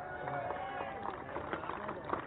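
A person's voice held on one long, slightly wavering note over low background noise.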